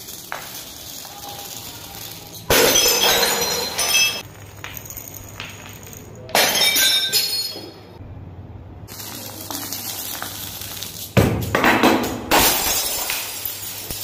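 Glass bottles filled with small beads and metal balls smashing on marble stairs. There are four sudden crashes of shattering glass: one about two and a half seconds in, one about six seconds in, and two close together near the end. Each crash is followed by the clinking of the spilled beads.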